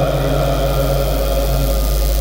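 Male kourel chorus holding one long, steady note in a chanted Mouride khassida, over a constant low hum.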